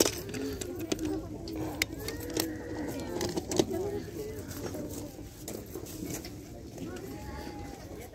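Small die-cast toy cars clicking and clinking against one another as a hand rummages through a pile of them on a table, over background voices.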